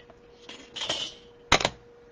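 Crafting supplies handled on a desk: a brief rustle, then two sharp clacks in quick succession about a second and a half in, like hard plastic items knocked together or set down.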